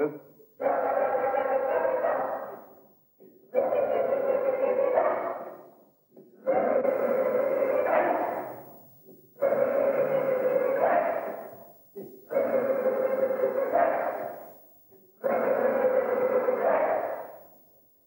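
A person's voice giving one long held sound six times, about every three seconds; each starts abruptly and fades away, and most end with a rise in pitch. These are vocal responses to a conductor's cues in a sound exercise for actors.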